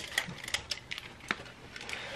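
Light, irregular clicks and taps of small objects being handled: a cardboard box of incense cones and a figurine incense burner.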